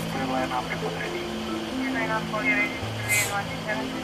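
Indistinct speech in a jet airliner cockpit over a low, steady hum, with a short hiss about three seconds in.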